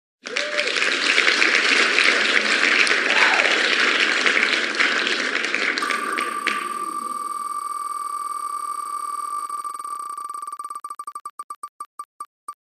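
Online spinner wheel sound effects: a loud burst of cheer and applause noise that fades after about seven seconds, overlapped by the wheel's rapid ticking, which slows into separate clicks spaced further and further apart near the end as the wheel comes to rest.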